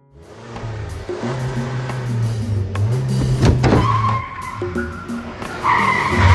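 Car engine running hard as the car accelerates, then tyres squealing under hard braking, once briefly at about four seconds and louder near the end.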